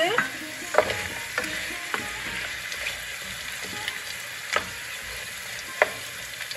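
Potatoes frying in hot oil in a pan while being stirred. There is a steady sizzle, with scattered scrapes and knocks of the utensil against the pan, the sharpest about a second in and near the end.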